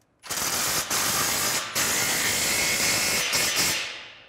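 Cordless impact wrench with a 15 mm socket running in a continuous rattle, tightening an exhaust pipe clamp bolt. It starts a moment in, breaks off briefly a few times and trails off near the end.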